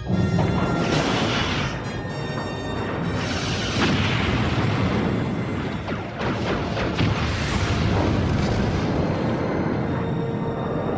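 Film sound mix of a starship battle: loud orchestral score over explosion booms, starting suddenly with a loud hit.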